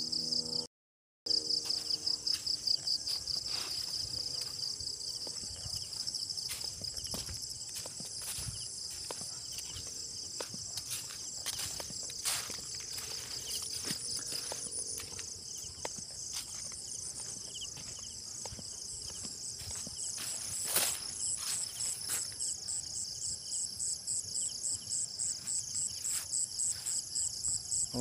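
A steady chorus of night insects chirping in a high, rapidly pulsing drone, with scattered soft knocks and one sharper click about three-quarters of the way through. The audio cuts out briefly about a second in.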